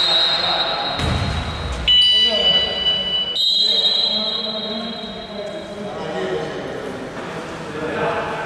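Indoor basketball court sounds: players' voices and a basketball bouncing on the wooden floor. Over them runs a steady high-pitched tone that changes pitch about two seconds in and again a second and a half later, then fades out about five and a half seconds in.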